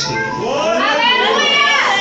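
A person's voice calling out at a high pitch, gliding up and then down in the second half.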